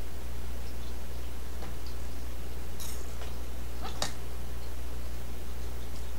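Steady low hum, with a few brief sharp clicks or scrapes near the middle; the loudest comes about four seconds in.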